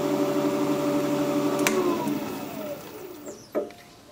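Jet 1840 wood lathe running with a steady hum, then a click about one and a half seconds in as it is switched off, its whine falling as the spindle winds down to a stop. A single knock follows shortly before the end.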